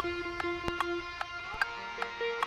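Instrument sound check: one held, high-pitched note with light clicks at uneven intervals, then a change to other held notes near the end.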